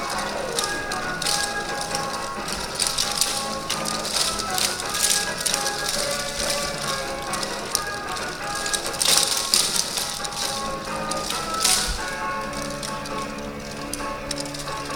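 Upbeat yosakoi dance music with wooden naruko clappers clacking in the dancers' hands, in quick clusters that are loudest about nine seconds in.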